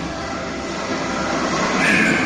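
A rushing, engine-like noise effect from the show's soundtrack, played over the hall's loudspeakers, swelling louder toward the end.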